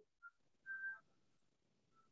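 Near silence, with a faint, brief high whistle-like tone in the first second.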